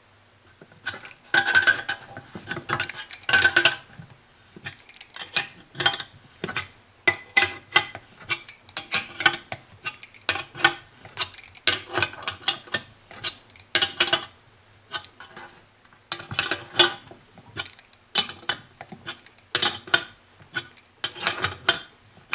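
Adjustable wrench clinking on the nut of a Greenlee 1½-inch knockout punch, turned stroke by stroke to draw the punch through the metal front panel: a long irregular run of sharp metallic clicks and clinks with short lulls.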